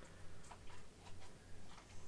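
Faint, irregular ticks and clicks, a few a second, over a low steady hum.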